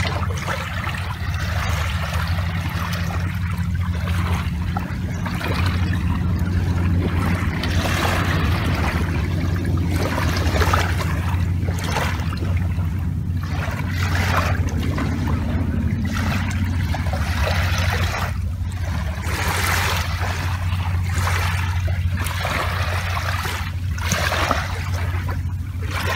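Small waves lapping and washing onto a shallow shore in soft splashes every second or two, over a steady low rumble.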